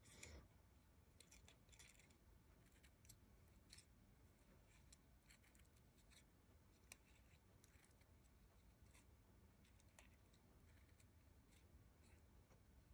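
Faint, irregular snips of small precision scissors cutting into a stack of two craft-paper flower centres, roughly one or two short clicks a second.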